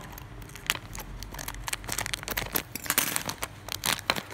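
Scissors cutting through a thin plastic bag, the plastic crinkling and rustling in a string of sharp clicks, busiest about three seconds in.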